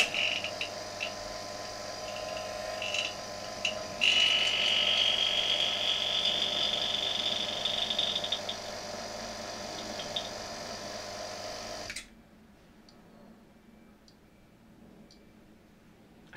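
Electric rotary-vane vacuum pump switched on and running steadily as it pumps the leftover hydrogen out of the gas tubing. About four seconds in it gets louder, with a high hissing whine that rises in pitch and fades over the next few seconds. The pump is switched off and stops suddenly about twelve seconds in.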